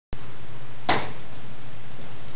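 Room tone: a steady hiss with a low hum, broken by one sharp click just under a second in.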